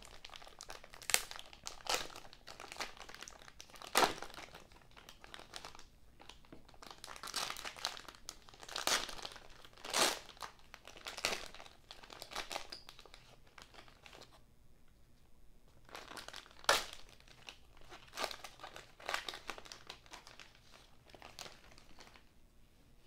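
Plastic wrapper of a trading-card rack pack crinkling and crackling in irregular bursts as it is pulled open and handled, with a short lull about two-thirds of the way through.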